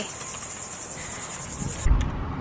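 A steady, high-pitched insect chorus, pulsing rapidly, that cuts off suddenly near the end, where a short low thump sounds.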